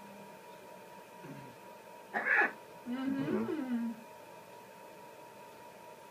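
Brief vocal sounds over a faint steady electronic tone: a short harsh burst about two seconds in, then a low voice-like sound that rises and falls in pitch for about a second.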